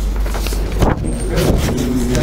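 Steady low rumble, with a sharp knock a little under a second in and brief rustling after it.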